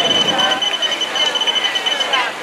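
Finish-line timing equipment sounding a steady, high electronic beep tone, broken by brief gaps, that stops just after the end.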